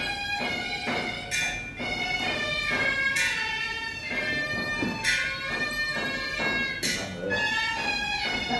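Chinese ceremonial music: a reedy shawm-like wind instrument holds a sustained melody while cymbals crash about every two seconds, four times.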